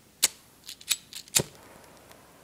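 Disposable lighter being struck, five sharp clicks over about a second, the first and last the loudest, as it is worked to light a flame.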